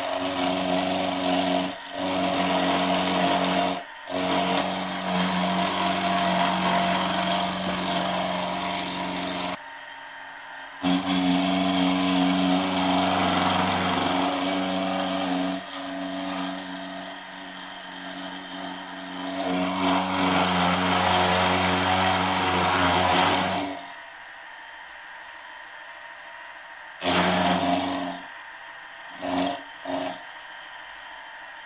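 Milling machine running, its end mill cutting the metal counterbalance weights on a crankshaft held in a dividing head to a set radius. The cutting noise rises and falls with a few brief breaks. About three-quarters of the way through the cutting stops, leaving a low hum broken by two short bursts.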